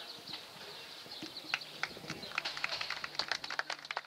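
A run of sharp clicks, scattered at first and coming faster and thicker over the last two seconds, over a low steady hum that starts about a second and a half in.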